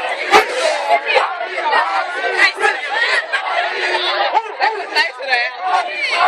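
Outdoor crowd of many voices talking and shouting over one another, with a few sharp hits cutting through, the loudest about a third of a second in.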